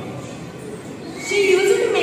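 A brief pause with faint room noise, then a girl's voice starting to speak about a second in.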